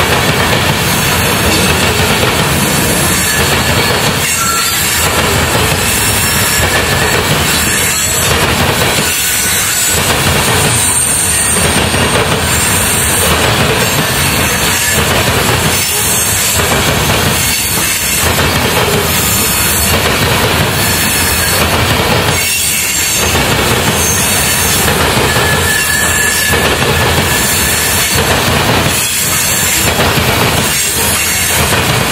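Freight train of covered hopper cars rolling past, its wheels rumbling and clattering on the rails without a break. A few brief, thin, high wheel squeals sound in the middle and later on.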